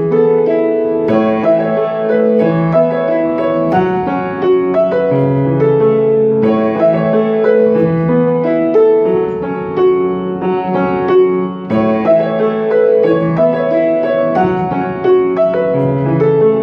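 Grand piano played solo: steady chords struck over a moving bass line, with a new phrase beginning every few seconds.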